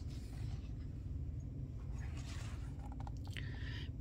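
A page of a hardcover picture book being turned by hand: a soft, brief paper rustle about two seconds in and a few faint ticks shortly after, over a steady low hum.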